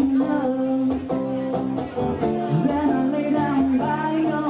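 Man singing a held, flowing melody over a strummed acoustic guitar, performed live.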